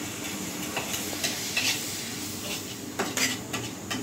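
Spoon stirring food frying in oil in a wok: a steady sizzle with repeated sharp scrapes and clinks of the spoon against the pan, the most of them near the end.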